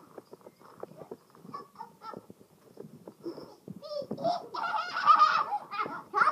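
A bicycle's bulb horn honked several times in quick succession, starting about four seconds in and getting louder.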